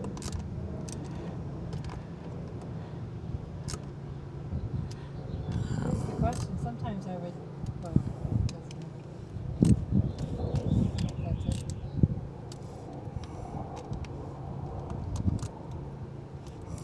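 Hands working the plastic bonnet of a Rain Bird 100-HV sprinkler valve as it is reassembled. There are scattered small clicks, taps and scrapes, a few sharper clicks from about eight seconds in, all over a steady low hum.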